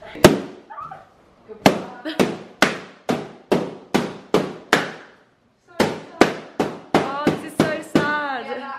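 Party balloons in a balloon garland being popped one after another with a knife: a string of sharp bangs, about three a second, with a short pause partway through.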